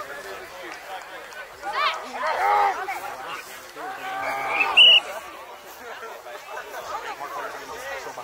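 Indistinct shouting and chatter from rugby players and onlookers, with loud raised calls about two and four seconds in. About five seconds in comes a brief, shrill high-pitched tone, the loudest sound.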